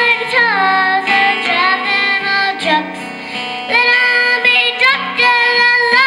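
A young girl singing into a microphone, accompanied by an acoustic guitar, in long held sung phrases.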